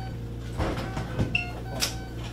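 Knocks and a metal rattle from a wheeled hospital gurney being moved, over a steady electrical hum, with short beeps from a patient monitor.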